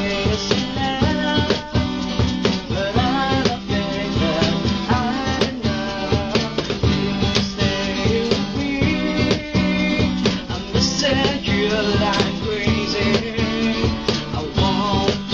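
Acoustic band music: guitar with a steady beat.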